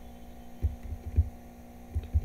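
Steady electrical mains hum in the recording, with a few faint low thumps, the clearest about half a second and a second in.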